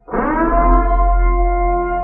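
Intro sound effect: a loud held synthesized tone with heavy deep bass, sliding up slightly in pitch as it starts and then holding steady.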